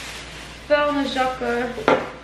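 Plastic grocery bag rustling as items are taken out, then a short stretch of a woman's voice, and a sharp knock near the end as a glass jar is picked up off the table.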